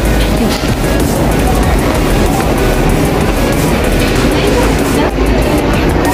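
Escalator running with a steady mechanical rumble, with music playing over it.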